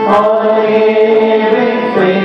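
Devotional chanting music in an Indian style, with long held sung notes that change pitch a few times.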